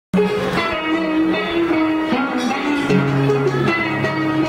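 Live electric guitar playing a melody of long held notes, with a drum kit accompanying.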